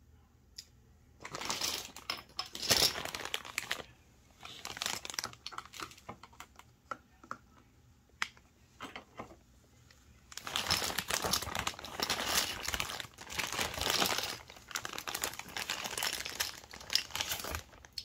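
Plastic bags and packaging of craft supplies crinkling as they are rummaged through. It comes in irregular bursts: a couple of seconds starting about a second in, again around five seconds, and a longer, busier spell from about ten seconds on. Small clicks and taps of containers fall in between.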